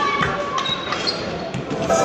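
Indoor volleyball play in a large sports hall: irregular thumps of the ball being struck and of feet on the court, with players calling out.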